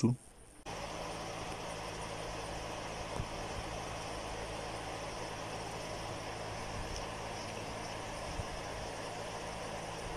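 A steady background hum with an even hiss, starting abruptly just under a second in and running on unchanged.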